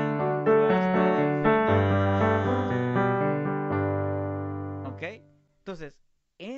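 Electronic keyboard on a piano sound, playing a run of chords over changing bass notes. A last chord is held and dies away about five seconds in, and a man's voice starts just before the end.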